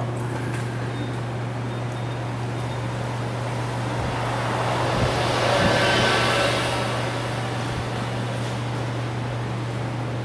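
Coffee-shop background noise: a steady low hum under a general room hiss, with a louder hissing swell that builds and dies away in the middle.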